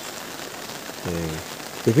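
Steady monsoon rain falling, an even hiss.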